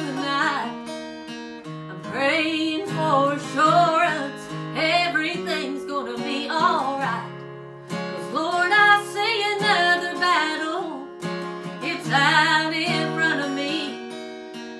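A woman singing a slow gospel song in phrases with wavering held notes, accompanied by an acoustic guitar.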